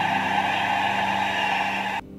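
Steady crowd noise from a packed rugby stadium in archival broadcast footage. It cuts off abruptly at the end.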